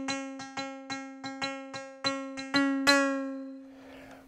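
ATV aFrame electronic percussion pad played by hand in a quick, uneven run of about a dozen strikes, each sounding the same ringing pitched note, with its main and sub sounds layered together. The last strike, about three seconds in, rings out and fades away.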